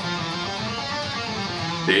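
Schecter Hellraiser C1 electric guitar playing the harmonic minor scale in second position, one note at a time, a few notes a second. A man's voice comes in right at the end.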